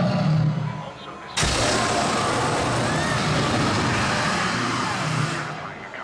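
The animatronic dragon atop the bank breathing fire: a sudden loud rushing burst about a second and a half in that holds for about four seconds and then dies away, over crowd voices.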